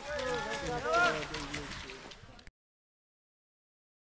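People's voices calling out along a ski trail, then the sound cuts off to dead silence about two and a half seconds in.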